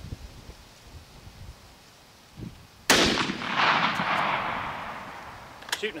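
A single shot from a 1918 Gewehr 98 Mauser rifle in 8x57mm, about three seconds in, its sharp report followed by an echo that fades over the next couple of seconds.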